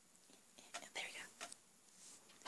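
A faint whispered word about a second in, against near silence.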